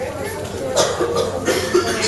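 Background voices of people talking, with a short cough just under a second in.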